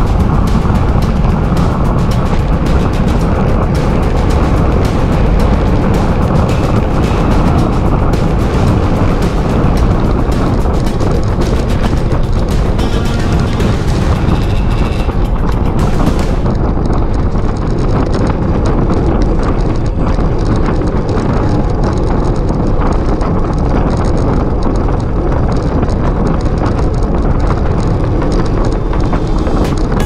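Wind buffeting the microphone of a handlebar-mounted camera on a road bike ridden at speed, a loud, steady low rumble, with music over it. About halfway through the high hiss drops out suddenly.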